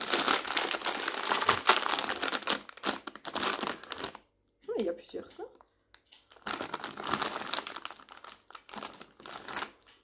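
Plastic sweet bag crinkling loudly as it is handled and opened, in two spells of a few seconds each with a short break between them.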